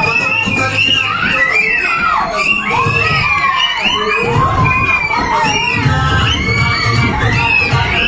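Many children shouting and cheering at once, a loud, continuous jumble of high voices. A pulsing music bass runs underneath, stronger in the second half.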